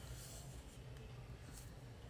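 Quiet room tone: a faint low hum with a couple of soft, brief rustles.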